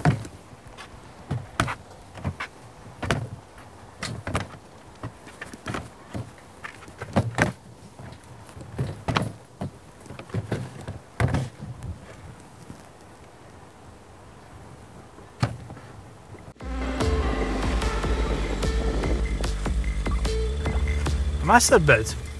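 A plastic cooler box knocking and scraping against the edges of a small car boot opening, in a string of irregular thumps as it is pushed in. About three-quarters of the way through, music starts abruptly and continues.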